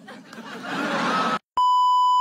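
A swelling burst of noisy, laughter-like sound cuts off abruptly. After a brief gap, about a second and a half in, a steady single-pitch test-tone beep of the kind that goes with colour bars starts and holds.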